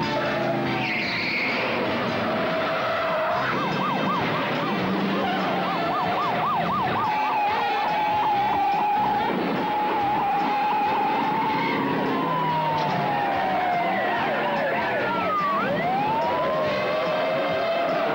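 A police car siren: a fast yelp of about four rises a second, then a steady held tone, then slow falling and rising wails, over a dramatic music score.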